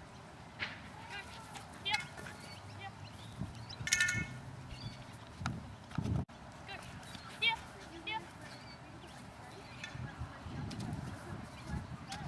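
Distant voice of a dog-agility handler calling to the dog outdoors, with short high chirping calls and a few sharp clicks.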